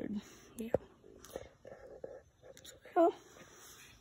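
Faint, indistinct low talk or whispering, with one short voiced sound about three seconds in and a light click before it.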